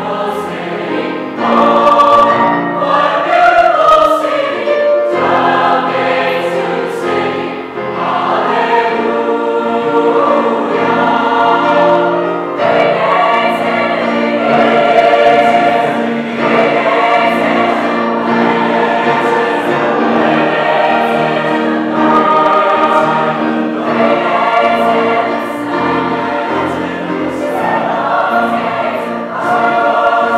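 Large mixed choir of men's and women's voices singing in parts, in sustained phrases that swell and ease, with short breaks between phrases.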